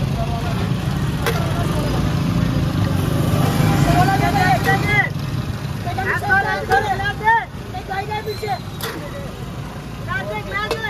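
Street noise: a motor vehicle's engine rumbling close by, building to its loudest about four seconds in and easing off after about five, while several voices talk over it through the second half.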